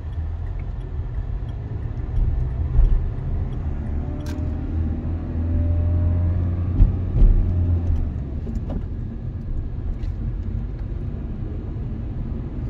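Dacia car's engine and road rumble heard from inside the cabin as the car pulls away and accelerates in the low gears, the engine getting louder through the middle and easing off after about 8 seconds, with two short thumps near 3 and 7 seconds.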